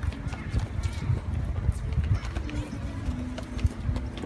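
Irregular footsteps of people walking and a child running on a paved path up to an outdoor staircase, with faint voices in the background.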